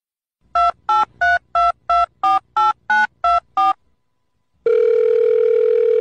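Telephone keypad tones: ten quick beeps, each two pitches at once, about three a second, as a phone number is dialled. About a second later a steady ringback tone starts on the line.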